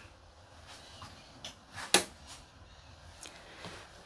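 Quiet room tone in a small enclosed space, broken by a few faint clicks and one sharp click about two seconds in.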